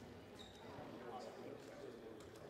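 Faint gymnasium background: distant voices and a basketball bouncing on the hardwood court.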